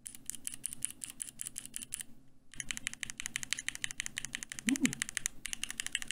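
Mechanical keyboard keystrokes on a Keychron Q2: Gateron G Pro red, blue and brown switches pressed in quick succession to compare their sound. Two rapid runs of clicks with a short pause between them.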